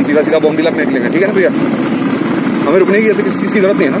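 Royal Enfield Thunderbird 350's single-cylinder engine running steadily while the motorcycle is ridden, heard under a voice speaking over it.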